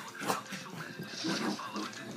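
Welsh corgi vocalizing during a bout of frantic, excited play ("corgi mode"), with a person laughing near the end.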